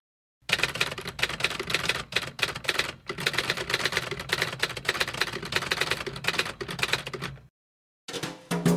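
Typing sound effect: a rapid, uneven clatter of keystrokes, many a second. It starts about half a second in and cuts off sharply shortly before the end.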